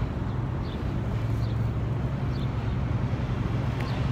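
Steady street traffic noise, with a low engine hum running evenly.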